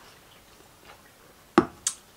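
Quiet room, then two sharp knocks about a quarter of a second apart near the end: a drink can being set down on a table.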